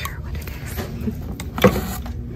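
A single sharp knock about three-quarters of the way through, over a steady low rumble of shop background noise and handling.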